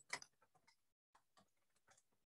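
Near silence broken by a few faint, scattered clicks: one sharper click just after the start, then small ticks spread irregularly through the rest.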